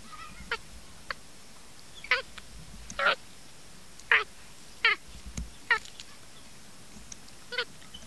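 Capuchin monkey giving short, squeaky, wavering calls while it eats corn, about eight in all, roughly one a second, each lasting a fraction of a second.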